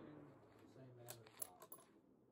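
Faint metallic clicks of a Tikka T3x TAC A1 bolt being lifted and drawn back after a shot, a few clicks in quick succession past the middle. At the start, the last of the 6.5 Creedmoor rifle report's echo dies away.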